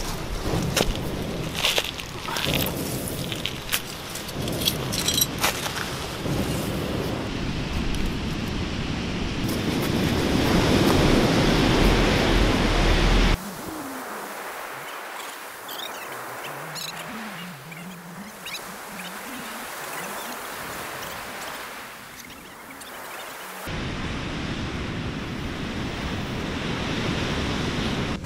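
A campfire crackles with sharp snaps over wind rumble, growing louder toward the middle of the stretch. After a sudden cut it gives way to a quieter passage of faint music, then, after another cut near the end, to the steady wash of ocean surf.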